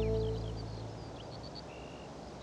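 Background music with held tones fading out in the first half second, leaving a quiet outdoor background with scattered faint high chirps.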